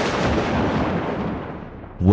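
The tail of a boom sound effect: a loud, noisy rumble dying away over about two seconds, the high end fading first.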